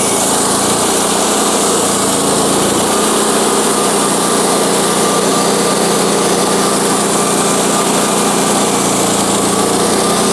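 Wood-Mizer LX150 band sawmill cutting a one-inch board from a white pine log: the mill's engine running steadily under load with the hiss of the band blade in the wood.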